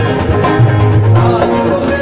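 Live band music played through a PA: guitars over strong bass and a steady beat, in a Hindi Christian worship song.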